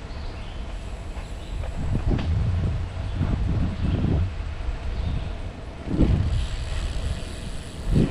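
Low, uneven rumble on the microphone of a camera moving along a forest path, swelling about two, four, six and eight seconds in.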